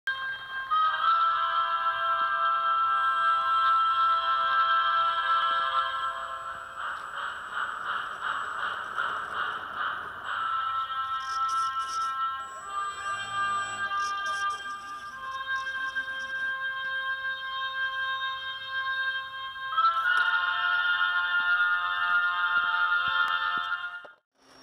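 Music: sustained, held chords that change every few seconds and cut off abruptly at the end.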